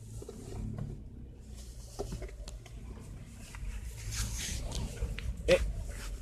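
Seat Mii's 1.0-litre three-cylinder petrol engine idling steadily, a low hum heard from inside the cabin.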